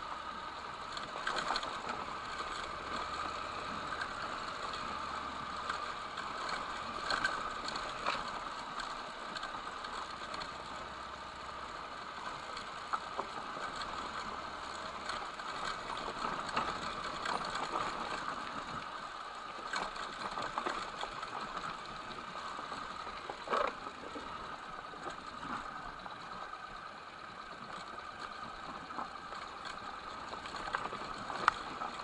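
Motorcycle riding slowly along a railway track bed, its engine running with a steady mechanical rattle and scattered short knocks as it bumps over the ballast and sleepers.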